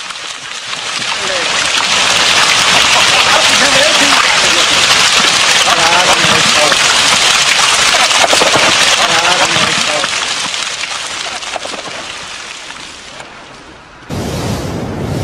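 Heavy downpour, a dense steady hiss of rain and running water that swells in over the first couple of seconds and fades away over the last few, with faint voices beneath it.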